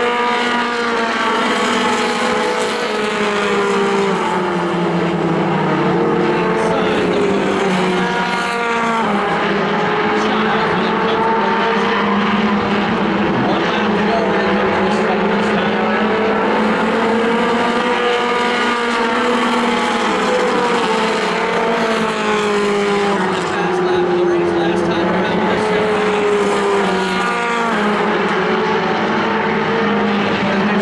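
A pack of mini stock race cars lapping a paved oval. Several engines run together, their pitch rising and falling over and over as the cars lift into the turns and accelerate out of them.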